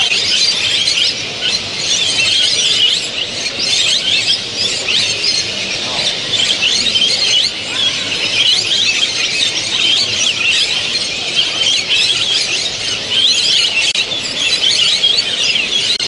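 Many caged finches singing and calling at once: a dense, overlapping chorus of quick high chirps and short trills that never lets up.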